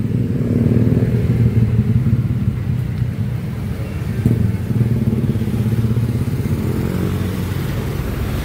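Passing street traffic, mostly small motorcycle and motorcycle-sidecar tricycle engines, making a steady low drone.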